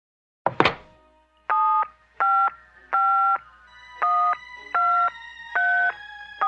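Two sharp clicks, then a number being dialed on a touch-tone telephone keypad: six two-tone beeps, roughly three quarters of a second apart. A faint steady tone comes in underneath about halfway through.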